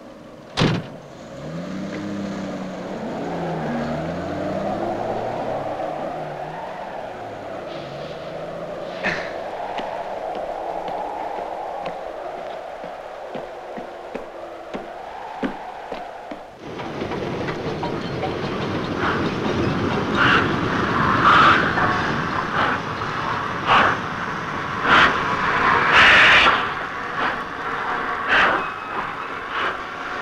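Truck engine running as it drives, its pitch rising and falling through gear changes. About halfway through, the sound cuts abruptly to a louder steady hiss with irregular metallic clanks and knocks of railway noise.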